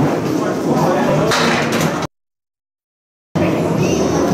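Candlepin bowling ball rolling down the wooden lane and knocking into the pins, over the chatter of the alley. The sound cuts out suddenly about two seconds in and returns about a second later.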